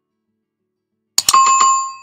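Subscribe-button animation sound effect: about a second in, two quick clicks, then a bright notification-bell ding that rings briefly and fades.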